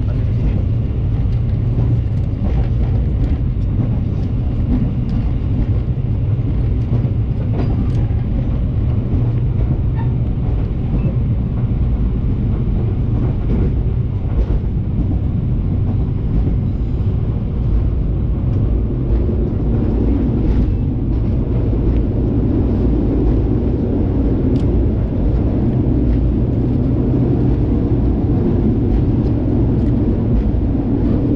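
Steady low rumble of a moving train heard from inside an executive-class passenger coach, the wheels running on the rails, with a few faint clicks.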